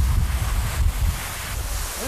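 Wind buffeting an outdoor microphone on a ski slope: a heavy, uneven low rumble with a hiss over it.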